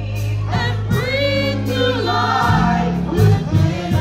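A small group of gospel singers singing into microphones, voices sliding between notes over a steady low sustained accompaniment whose bass notes change about halfway through.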